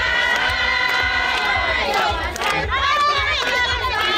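A crowd of women cheering and singing out in high voices, many voices at once and loud throughout.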